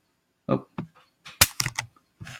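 A quick run of about five sharp clicks within half a second, from working a computer's keys and mouse, after a short spoken "oh".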